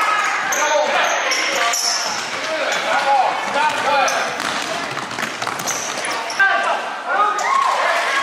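A basketball being dribbled on a hardwood gym floor, with spectators' voices carrying through the hall.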